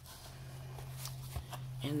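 Rustling and sliding of packaged craft items and foam wrap being handled in a cardboard box, growing louder, with a small click about one and a half seconds in, over a low steady hum.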